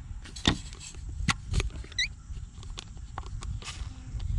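Small metallic clicks and scrapes of a screwdriver turning the brass bleeder screw on a Duramax LB7 fuel filter head. Near the end comes a short hiss of trapped air escaping, a sign that the fuel system is air-locked and has lost its prime.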